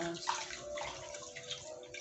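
Rice being washed by hand in water in a metal pot: fingers swishing and rubbing the grains, a wet, uneven sloshing with many small clicks.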